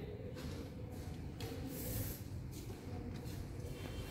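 Faint, steady low rumble of background noise with no distinct event.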